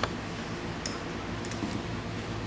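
A few light clicks from the flap's hinge and spring hardware as the flap is set by hand to its balance position: one sharp click at the start, then two fainter ticks about a second and a second and a half in, over a low steady hum.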